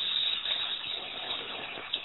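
Steady hiss of background noise on a telephone call-in line, with no one speaking; it fades slightly toward the end.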